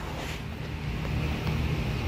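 Steady low rumble with a light hiss, slowly growing a little louder: background noise with some wind on the microphone.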